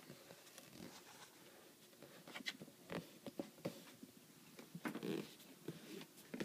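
Faint handling noise from a leather sneaker being turned and felt in the hand: scattered small taps, scrapes and rustles, busier in the second half.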